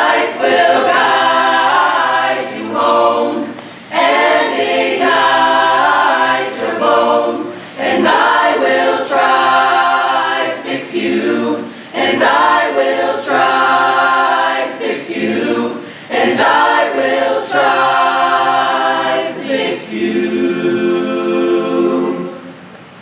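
Mixed-voice a cappella choir singing in phrases of about four seconds, with short breaks between them, ending on a long held chord near the end.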